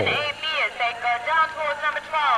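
A person's voice talking, untranscribed; no other sound stands out.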